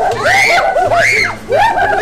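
A young girl shrieking with laughter: a string of high squeals that rise and fall in pitch.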